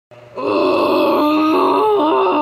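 A person voicing a long, loud monster groan for a white ape-man toy figure. It starts about half a second in and wavers up and down in pitch.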